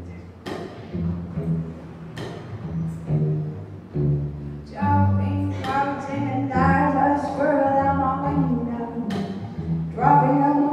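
Live instrumental music from a cello, bassoon and keyboard trio: low sustained notes punctuated by sharp percussive hits, joined about five seconds in by a higher melodic line.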